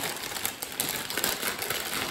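Crackly, rustling crinkle of a foil-lined crisp packet being pulled open by hand.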